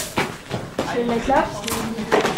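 Faint voices talking, with a few light knocks and clicks near the start.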